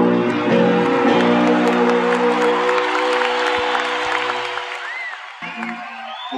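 A live rock band's song ends on a held final chord that dies away over about four seconds, while a concert audience applauds and cheers.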